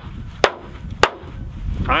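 Hammer face striking a clear corrugated Tuftex polycarbonate greenhouse panel laid on the ground: two sharp smacks about half a second apart. The panel takes the full-force blows without being penetrated, only dented.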